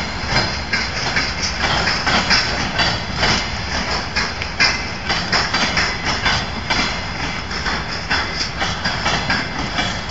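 Freight train of heavily loaded flatcars rolling past close by: a continuous rumble with irregular clatter and clicks of steel wheels on the rails.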